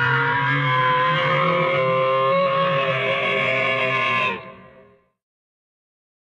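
Dinosaur roar sound effect: one long, steady roar with a strong pitched, almost musical tone, fading away about four seconds in.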